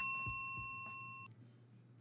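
A single bright chime-like ding, struck once and ringing with several clear high tones that fade out over about a second, ending a short music sting.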